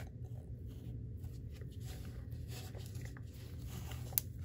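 Faint handling of Pokémon trading cards and a foil booster pack being picked up: a few soft ticks and rustles over a steady low hum.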